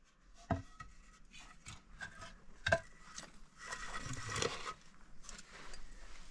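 Hand work on timber: wooden pieces knocking, with two sharper knocks and a second or so of scraping on wood past the middle.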